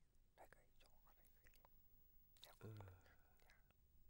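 A man whispering into another man's ear, very faint, followed near the end by a short, low murmured voice.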